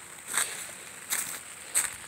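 Footsteps on dry leaves and grass, about three soft steps.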